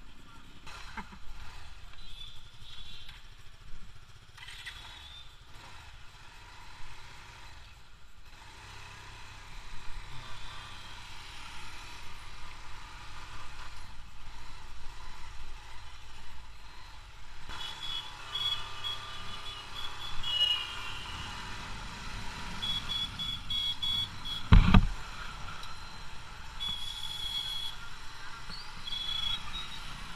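Bajaj Pulsar 220 motorcycle running as it rides off into road traffic, with a steady low engine hum. In the second half short high-pitched beeps come and go, and a single loud thump sounds about 25 seconds in.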